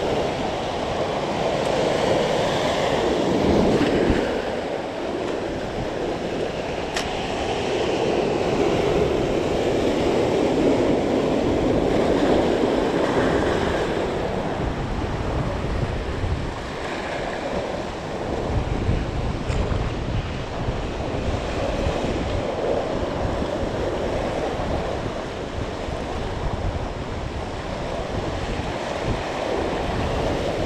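Sea surf breaking and washing over rocks near the shoreline, swelling and easing every few seconds, with wind buffeting the microphone.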